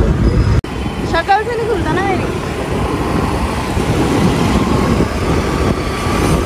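Road traffic noise in a slow-moving jam, heard from a scooter riding past the stalled cars, with heavy low rumble at first and a brief dropout just over half a second in. A few voices are heard about a second in.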